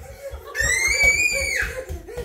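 A young child's high-pitched playful squeal, held for about a second, with the pitch rising a little and then dropping off at the end.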